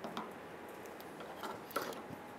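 A few faint clicks and scrapes as a gloved hand works a plastic electrical connector loose from the fuel tank pressure sensor, with the sharpest click near the end.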